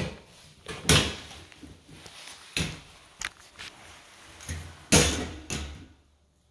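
Sheet-metal door of a home electrical breaker panel being unlatched and swung open: a series of clicks and knocks, the loudest about a second in and again near the end.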